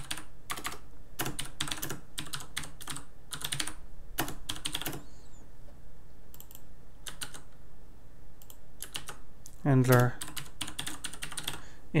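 Typing on a computer keyboard: quick runs of keystrokes, a pause about five seconds in, then a few scattered keystrokes.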